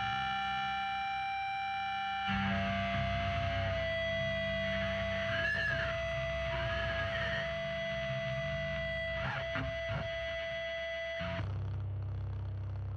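Heavily distorted electric guitar holding long, ringing chords in a crust punk recording. The chord changes about two seconds in, then cuts off suddenly near the end, leaving only a low amplifier hum.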